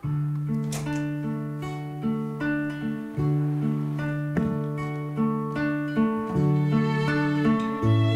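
Acoustic guitar starting a song's introduction, beginning abruptly and playing a steady picked arpeggio pattern: a new note every fraction of a second over held low bass notes that change every few seconds.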